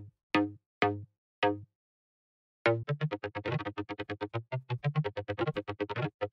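Short, clicky Serum synth bass notes from the Fundamentals preset: four single notes, then after a short gap a fast run of short repeated bass notes as a melody is sketched in the piano roll.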